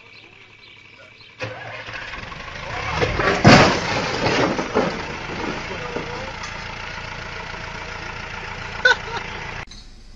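A motor vehicle's engine running steadily, cutting in suddenly about a second and a half in. About two seconds later comes a louder, rougher stretch with knocks and voices. A short sharp knock sounds near the end.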